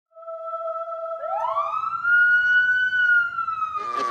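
Intro sound effect for a news-style title: a steady electronic tone, then a siren-like tone that glides up, holds, and slowly falls. Just before the end, a fuller musical sting comes in.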